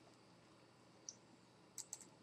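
Near silence broken by a few faint clicks, one about a second in and two in quick succession near the end: a computer mouse clicking to advance the slideshow.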